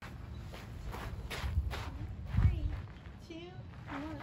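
Footsteps on wood-chip mulch, a run of short steps through the first half, with a few faint vocal sounds later on.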